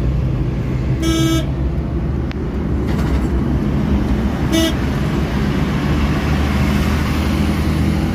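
Steady engine and road rumble inside a moving Maruti Suzuki Eeco van at highway speed, with two short horn toots: one about a second in, and a briefer one about four and a half seconds in.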